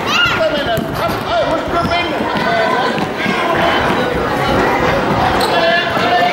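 Young children's indoor football game in a sports hall: the ball is kicked and bounces on the wooden floor among running footsteps, with children's shouts and onlookers' voices echoing in the hall.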